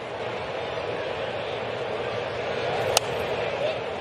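Steady ballpark crowd murmur, swelling slightly as the pitch comes in, then one sharp pop about three seconds in: the pitched baseball smacking into the catcher's mitt on a taken pitch.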